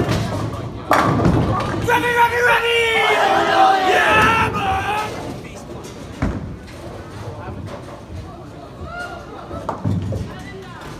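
Bowling alley action: a ball rolls down the lane and pins clatter, with a sudden loud burst about a second in. Teammates shout and cheer for a few seconds after it, and a couple of dull thuds of balls follow later.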